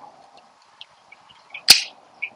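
A single sharp plastic click about a second and a half in, from a small solar fountain pump and its plastic intake filter basket being handled.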